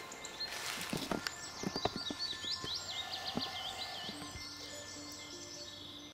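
Footsteps and crackling on twigs and leaf litter, irregular clicks and snaps, with a small bird singing a fast warbling song in the background.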